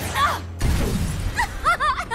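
Cartoon magic-spell sound effect: a sudden glassy shatter and crash about half a second in, after a short gasp. A woman laughs near the end.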